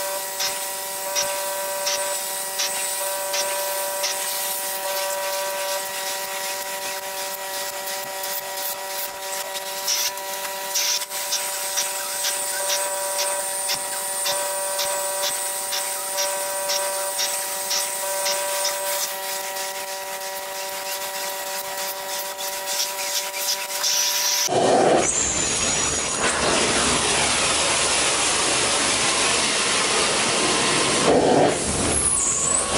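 Carpet-cleaning extraction wand working carpet under hot-water-extraction vacuum: a steady machine whine with regular clicking, about two clicks a second. About 24 seconds in it gives way to a much louder, closer rushing hiss of the wand sucking across the carpet.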